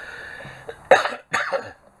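A man coughing twice, two short sharp coughs about half a second apart, about a second in.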